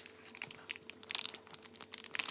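Plastic wafer-bar wrappers crinkling as they are handled: a run of small, irregular crackles.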